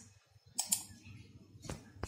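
A few faint clicks of laptop keys being pressed: two or three about half a second in, and one sharper click near the end.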